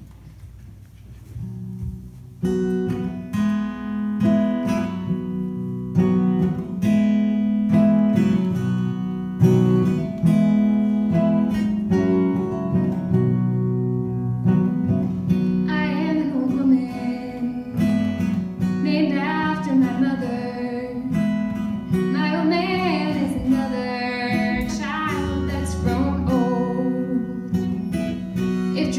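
Instrumental intro of a folk song on acoustic guitar, starting about two seconds in. About halfway through, a lap slide guitar joins with a gliding, wavering melody.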